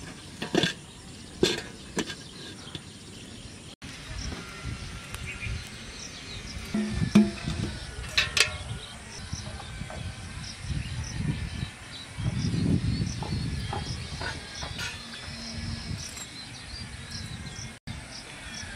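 A metal lid is set on an iron kadai with a few sharp clinks. After a break, a steel spoon scrapes and rustles in a pile of ash and embers, over faint outdoor insect chirping.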